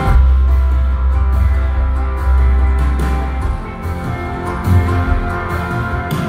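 A live rock band playing: acoustic and electric guitars over a drum kit, with a deep low note held through the first half.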